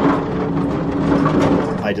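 U.S. General rolling tool cart's casters rolling across a concrete floor: a steady rumble with a low hum in it that stops near the end.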